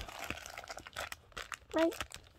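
Plastic packaging crinkling as a pocket tissue pack and a clear plastic bag are handled, dying away about a second in.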